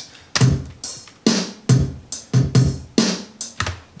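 A simple programmed drum beat from one of Ableton Live's default drum kits, played from a MIDI track with no groove applied. It is an even run of hits about twice a second, each hit combining a low kick with a bright top.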